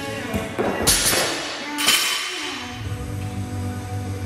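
Music playing, with two loud sharp crashes about a second in and again near two seconds: a barbell loaded with bumper plates dropped onto rubber gym flooring.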